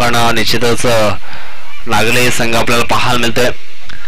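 A man's voice commentating on a cricket match in Marathi, speaking almost continuously with two short pauses.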